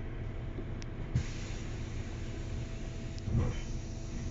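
Inside a MAN DL 09 double-decker bus while it drives: a steady low drone of engine, drivetrain and road noise with a faint steady whine. A hiss rises about a second in, with a short knock at the same moment, and a louder jolt near the end.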